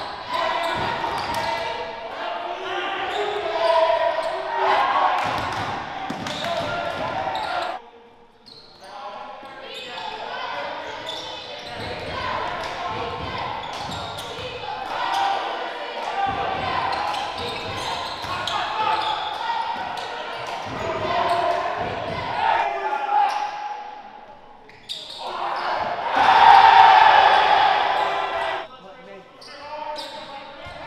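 Live basketball game sound in a gym: a ball dribbling on the hardwood under indistinct shouts from players and spectators, with a louder stretch of voices near the end.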